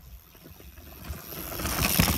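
Mountain bike's knobby tyres rolling over a dirt forest trail. The sound grows steadily louder as the bike approaches and peaks as it passes close by near the end.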